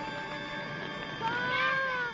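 Film soundtrack: music with two long wailing cries in the second half, each rising and then falling in pitch.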